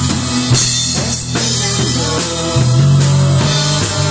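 Live rock band playing: electric guitars, bass guitar and drum kit, loud and steady.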